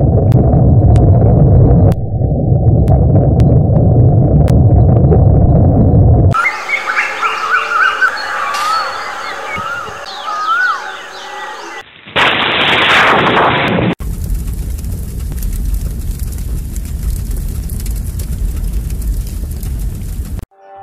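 A sequence of sound effects: a loud low rumble for about six seconds, then birds chirping, a short loud rush of noise about twelve seconds in, and a steady hiss after it.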